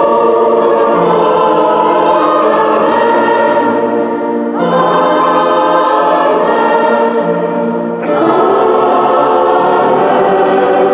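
Mixed choir of women's and men's voices singing classical sacred music in sustained chords, with new phrases entering about halfway through and again near the end.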